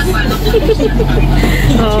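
Steady engine and road hum of a moving passenger van, heard from inside its cabin.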